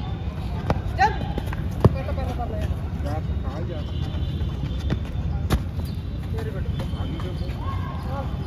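Distant voices of several people calling and talking across an open ground, over a steady low rumble, with a few sharp knocks, the loudest about two seconds in and another past the middle.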